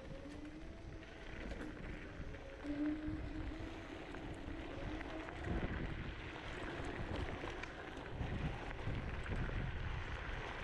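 Kaabo Mantis Pro electric scooter riding over a dirt and gravel trail: wind buffeting the microphone over the rumble of the tyres. The dual motors whine, drifting up and down in pitch, until about five and a half seconds in, when the whine fades and the rumble gets rougher.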